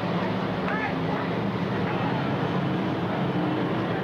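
Dirt modified race cars' V8 engines running steadily as the cars circle a dirt oval, with faint voices in the background.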